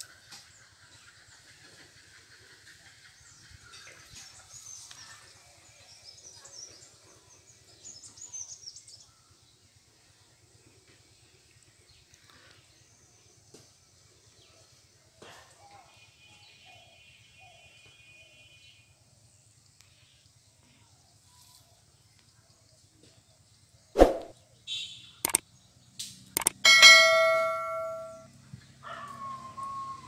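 Quiet outdoor background with faint high chirps early on. A sharp knock comes late, then a few clicks and a loud bell-like ringing chime that dies away over about a second and a half.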